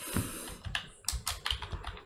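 Typing on a computer keyboard: an uneven run of short key clicks.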